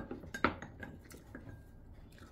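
Eating utensils clinking and scraping against a ceramic bowl: two sharp clinks, the louder about half a second in, each with a brief ring, then a few lighter taps.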